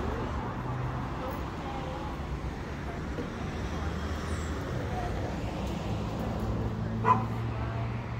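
A dog barks once, briefly, about seven seconds in, over a steady low hum.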